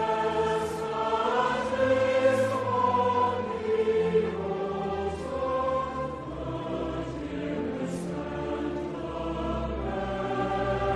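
Background music: a choir singing slow, held notes.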